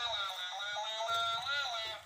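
Dancing cactus toy playing a short, tinny electronic tune through its small speaker, its notes stepping up and down.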